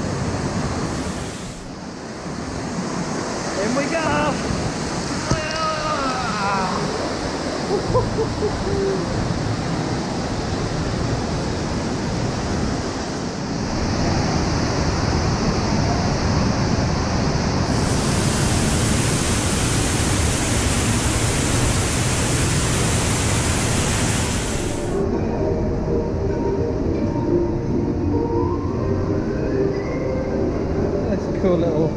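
Artificial waterfall pouring over rockwork close by: a loud, steady rush of falling water, heaviest while passing behind the water curtain. Voices call out a few seconds in, and the rush drops away about 25 seconds in.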